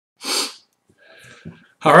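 A single short, sharp burst of breath from a man, about a quarter second long, followed by faint breathing and mouth sounds before he starts to speak.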